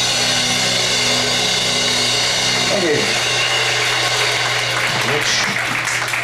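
A live rock band's final chord and a low hum ring on under a roar of crowd noise, then the chord stops about three seconds in after a short falling slide. The crowd keeps cheering, with scattered clapping near the end.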